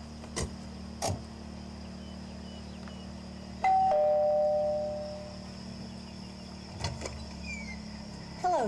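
Two-note "ding-dong" doorbell chime about halfway through, a higher note followed by a lower one that fades out over about two seconds.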